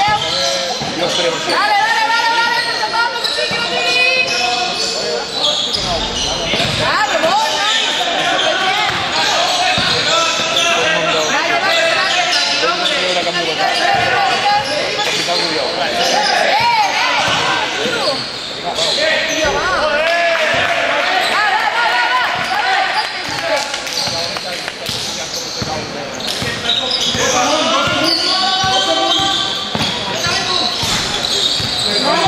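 Basketball bouncing on a court amid many voices, echoing in a large hall.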